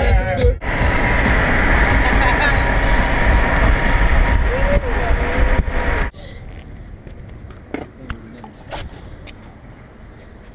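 Wind and road noise from a car at highway speed, loud and steady, cutting off abruptly about six seconds in to a much quieter in-car hum with a few light clicks.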